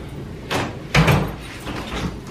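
An interior door being handled: a short rattle about half a second in, then a heavier knock with a dull thud about a second in.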